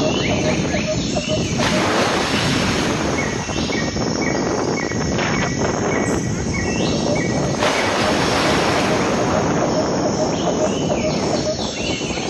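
Wind buffeting a phone microphone, with two stronger gusts about two seconds in and again near eight seconds. Birds chirp throughout in quick runs of short repeated notes.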